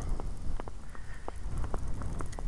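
Low wind rumble on the microphone during a snowstorm, with irregular small clicks and crackles several a second.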